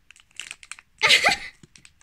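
A cat biting and tugging at a meaty cat-treat stick in its plastic wrapper: faint crinkling clicks, then a louder burst about a second in as the stick is pulled free.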